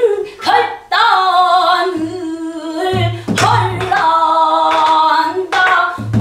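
A woman singing pansori in a full, strained throat voice, holding long notes that bend and waver, accompanied by a buk barrel drum giving a few dull thumps and sharp strikes between her phrases.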